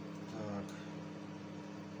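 A man's short wordless vocal sound about half a second in, over a steady low hum, with a faint click just after.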